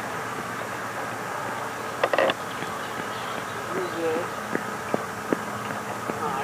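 Handling noise: a brief rattle of sharp clicks about two seconds in, then a few single light clicks, over a steady hiss and faint low voices.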